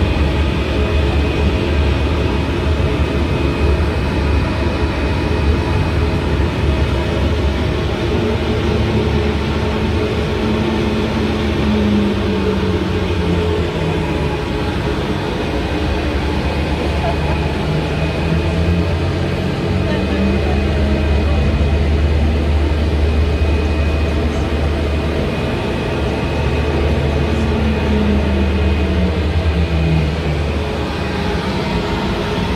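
Passenger ferry's engine running with a deep, steady drone and a thin high whine. A lower engine note slides down and back up a few times as the ferry manoeuvres toward the pier.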